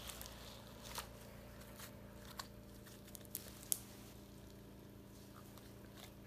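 Freshly made homemade slime squeezed and worked in the hands, giving faint, scattered sticky clicks.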